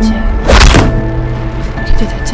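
Dark film score of sustained low tones, with one heavy thud about half a second in.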